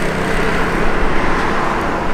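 Cars and a motor scooter driving past close by on an asphalt road: a steady rush of tyre and engine noise.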